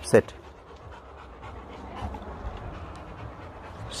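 A Rottweiler panting steadily, tired out after a long walk. A short spoken word comes loudly right at the start.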